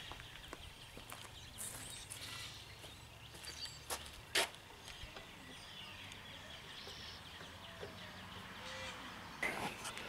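Quiet outdoor background with a few faint knocks and rustles as a large plush toy is lifted and set into the seat of a metal scale tank. The loudest is a single sharp click about four and a half seconds in.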